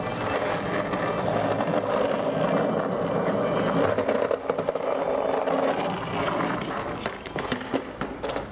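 Skateboard wheels rolling on concrete, a steady rumble that eases off near the end, with a few sharp clicks just before it ends.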